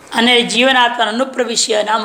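Speech: a man lecturing in Hindi and Sanskrit.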